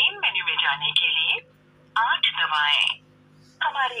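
Recorded automated voice menu of the Vi (Vodafone Idea) customer care line reading out options in Hindi, heard through a phone's loudspeaker with thin, telephone-narrow sound, in three short phrases with pauses between.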